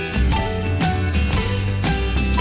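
Background music with a steady beat, pitched notes over a strong bass line.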